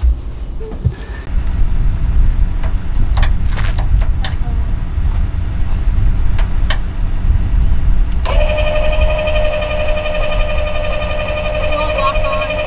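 A steady low rumble with a few sharp clicks of metal hitch hardware being handled. About eight seconds in, a travel trailer's electric tongue jack motor starts suddenly and runs with a steady whine.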